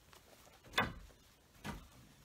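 Two short knocks about a second apart, the first louder, over a quiet room.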